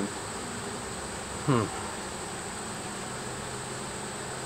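Steady low buzz of a colony of honey bees swarming over an open hive.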